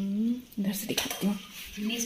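A metal serving spoon clinking and scraping against a stainless steel plate and bowls as rice is served, with sharp clicks about a second in. A person's voice is heard over it, humming a held note at first and then speaking briefly.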